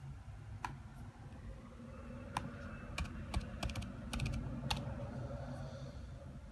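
Typing on a laptop keyboard: about ten sharp, irregular keystrokes, most of them bunched together two to five seconds in.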